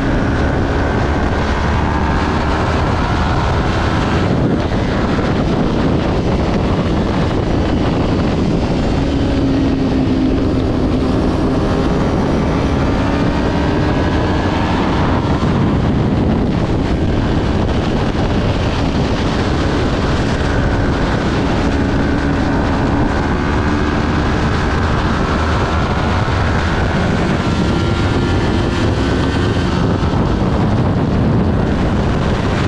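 Kawasaki Ninja 400's parallel-twin engine at racing revs, heard from an onboard camera through heavy wind noise. The pitch repeatedly climbs and drops back as it shifts gears and slows for corners, with brief dips about four seconds in and around the middle.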